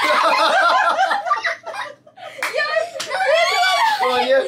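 A family laughing and talking excitedly, with two sharp smacks about two and a half and three seconds in.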